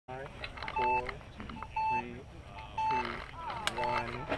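Electronic race-start timer counting down: four short, evenly spaced beeps, one a second, each a steady two-note tone. A man's voice calls out alongside the beeps.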